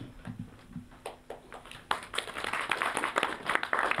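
Audience clapping, starting about halfway through as scattered claps and thickening into applause.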